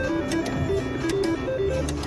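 Three-reel slot machine playing a quick run of short electronic notes while its reels spin, with a few sharp clicks, over a steady wash of casino tones and music.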